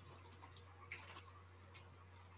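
Near silence: a low steady hum of the call's room tone, with a few faint ticks, the clearest about a second in.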